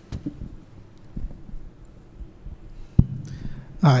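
A few dull low thumps and one sharp click about three seconds in, typical of a microphone being handled before use. A man then says "Hi" into it right at the end.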